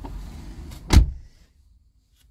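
A car door shutting with one loud thump about a second in, after which the low rumble drops away to quiet.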